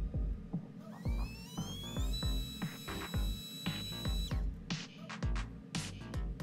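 Stock E011 0716 brushed coreless micro motor with a three-blade prop spinning up on a thrust stand. It makes a whine that rises in pitch about a second in, holds steady at full power, and cuts off suddenly a little past four seconds in. Background music with a steady beat plays throughout.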